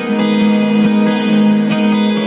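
Several acoustic guitars strumming the song's chords, the chord ringing on steadily.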